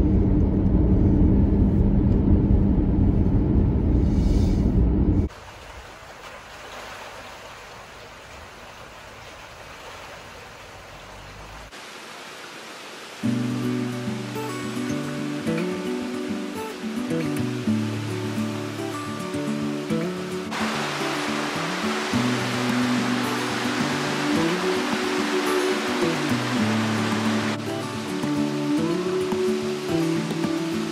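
A moving car's steady low road rumble for about five seconds, cutting off suddenly to a faint hiss. About thirteen seconds in, instrumental background music starts and plays to the end.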